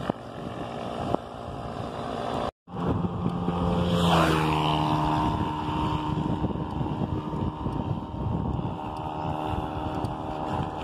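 Wind and road rumble on the microphone of a moving bicycle. The sound cuts out briefly about two and a half seconds in, then a motor vehicle passes close, its engine pitch falling as it goes by, and its note carries on steadily afterwards.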